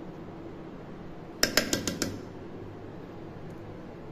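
Five quick metallic clinks in just over half a second, about a second and a half in: a steel spoon striking the edge of a steel container as strained curd is knocked off it into the milk.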